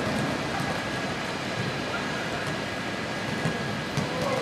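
Steady ambient noise of an open-air football stadium during the pre-match warm-up: an even wash of sound with no distinct kicks or voices standing out.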